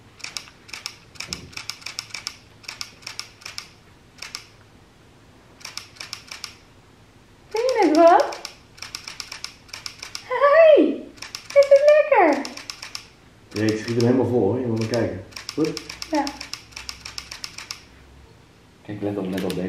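Bursts of rapid light clicking from a spoon tapping and scraping a small feeding bowl. Midway through, a baby gives three high squeals that sweep up and down in pitch, then a lower stretch of vocalizing.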